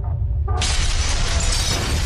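Logo-animation sound effect: a steady deep rumble, then about half a second in a sudden loud crash of shattering debris that carries on.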